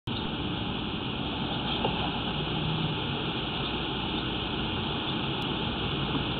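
Steady background noise with a faint low hum, unchanging and without distinct events.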